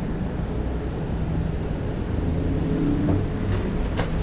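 Steady city street traffic: a low rumble with an engine hum.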